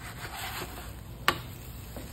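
Wooden spatula scraping under a paratha in a nonstick frying pan, then one sharp knock a little over a second in as the paratha is flipped.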